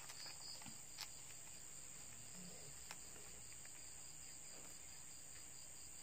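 Near silence with a faint steady high-pitched hiss, broken by a few faint clicks and rustles of satin ribbon handled by hand: one right at the start, one about a second in, and one near three seconds.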